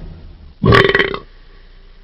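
Pontiac Trans Am WS6's V8 engine giving one short, burbling rev of about half a second, a little before the middle, then dropping to a faint low hum.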